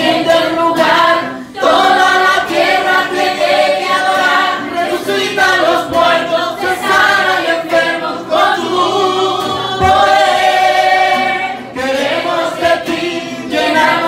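Congregation singing a worship song together, led by a man singing into a microphone and accompanied on classical guitar.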